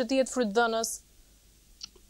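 A woman's speech for about the first second, then a pause of room tone broken by one faint click near the end.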